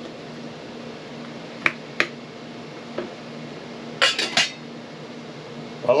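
Stainless-steel Berkey gravity water filter being handled: two sharp metal clinks about a second and a half in, a faint one a second later, then a quick run of three clinks about four seconds in. A low steady hum runs underneath.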